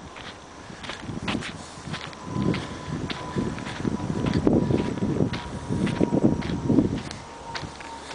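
Footsteps of a person walking at a steady pace on a sandy dirt road strewn with pine needles.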